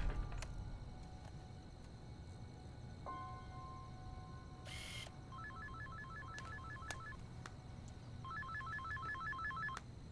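Mobile phone ringtone: two short runs of a rapid electronic trill, about eight beeps a second, a little over a second each and about three seconds apart, over faint background music.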